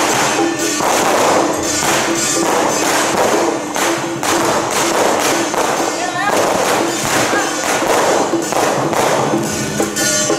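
Loud temple-procession percussion: drums with repeated crashing cymbals and gongs every second or two, dense and unbroken.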